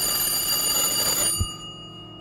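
A bell ringing loudly for about a second and a half, then cutting off with a short thump, leaving a faint tone hanging on.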